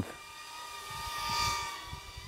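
BetaFPV Pavo20 Pro cinewhoop's 1104 brushless motors and 2.2-inch propellers whining in flight: a smooth, fairly quiet whine with gentle shifts in pitch, growing louder to about one and a half seconds in and then easing off.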